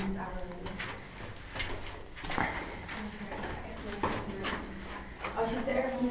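Footsteps knocking and scuffing on a rock floor at an irregular walking pace, with people's voices talking underneath.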